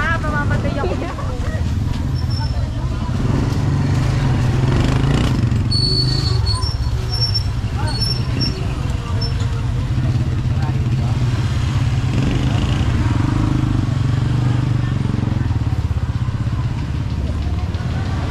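Street traffic: motorcycle and motorized tricycle engines running close by in a steady low rumble, with passers-by talking and a few short high chirps around the middle.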